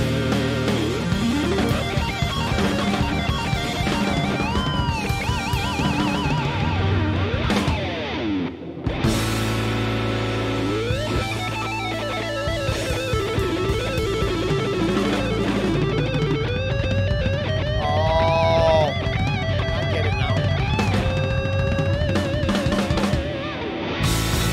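Electric guitar playing a blues instrumental over drums, the lead full of string bends and wide vibrato. About nine seconds in the band drops out briefly, then comes back heavier in the low end.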